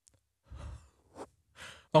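A person breathing out audibly into a close microphone: three short breathy sighs or exhalations, before a voice starts to speak at the very end.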